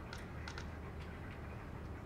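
A few light clicks from a laptop being operated, over a steady low room hum.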